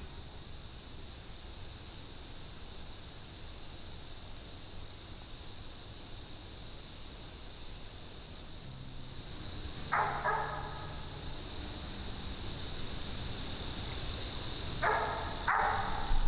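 Mountain cur barking treed: one bark about ten seconds in, then two quick barks near the end, the dog's sign that it has an animal up a tree.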